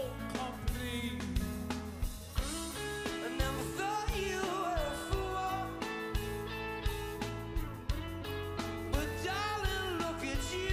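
Live rock band performance: a male lead vocal over electric guitar and a steady drum beat.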